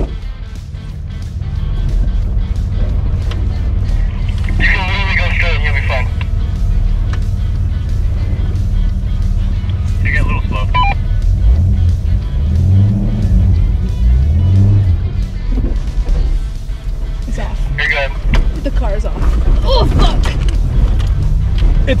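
1991 Jeep Comanche engine running at low speed, heard from inside the cab as the truck crawls over rocks, with frequent knocks and rattles from the body. About halfway through the revs rise and fall twice.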